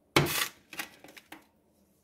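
A stainless steel frying pan sliding briefly across a glass-top stove as it is swirled, followed by a few light clicks and knocks as it settles.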